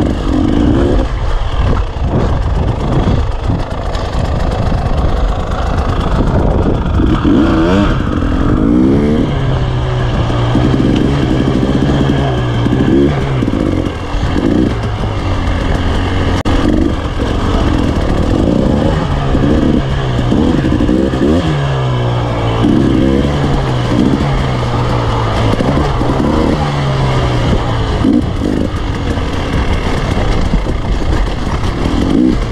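Enduro dirt bike engine heard from on board, revving up and dropping back over and over as the rider works the throttle, its pitch rising and falling every second or two over steady wind and chassis noise.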